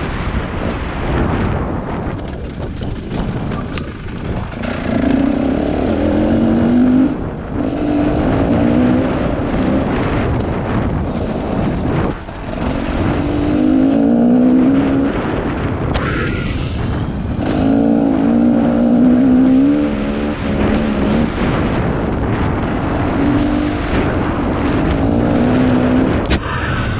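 Dirt bike engine running under the rider, its pitch rising and falling again and again as the throttle is opened and closed along the trail, with short let-offs now and then.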